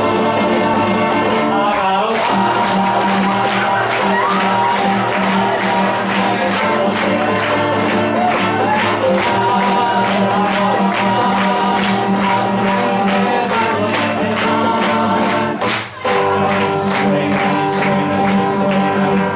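An acoustic guitar is strummed in a steady rhythm under live singing voices, with a brief break in the sound near the end.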